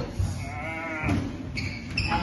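Squash shoes squeaking on the wooden court floor during a rally: a wavering squeal, then a thinner high-pitched one near the end, with a ball strike just after the start.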